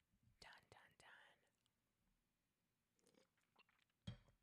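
Near silence, with a few faint mouth clicks and lip smacks about half a second to a second in and again near three seconds.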